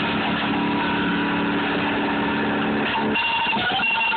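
Guitar, a chord held and ringing steadily for about three seconds, then new notes come in near the end.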